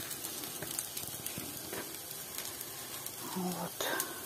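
Apple fritter batter frying in hot oil in a cast-iron skillet: a steady sizzle.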